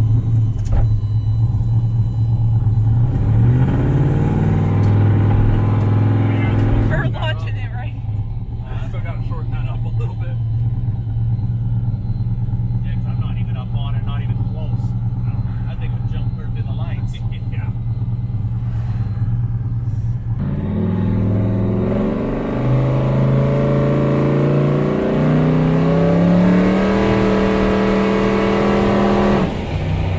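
Twin-turbo 427ci LSX V8 heard from inside the car's cabin, pulling hard twice: the engine note climbs for a few seconds and drops off suddenly about seven seconds in, runs steady at cruise, then climbs again in steps from about twenty seconds in and falls away just before the end.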